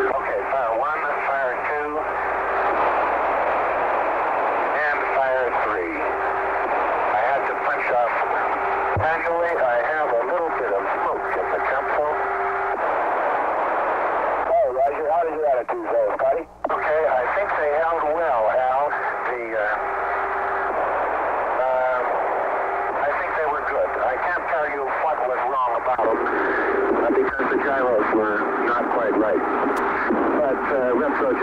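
Air-to-ground radio link from a Mercury spacecraft: a hissing, narrow-band channel with faint, garbled voices breaking through the static. A steady tone comes and goes.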